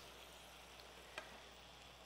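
Faint, steady sizzling of shrimp frying in garlic butter and vegetables sautéing in frying pans, with one light click about a second in.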